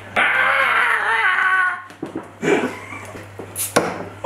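A man's drawn-out strained whine lasting about two seconds, wavering in pitch, as he strains to prise the cap off a beer bottle. Shorter vocal noises follow, and a sharp click comes near the end.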